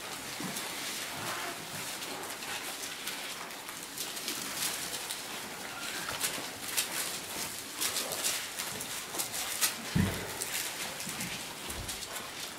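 Thin Bible pages being leafed through by several people, a scattering of soft paper rustles and flicks, with a dull thump near the end.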